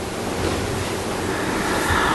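A steady, even rushing hiss with no speech: the background noise of the meeting recording in a pause between speakers.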